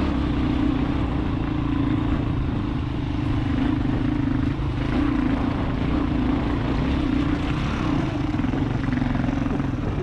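Single-cylinder dual-sport motorcycle engine running steadily under load while climbing a rocky dirt trail, heard from on the bike.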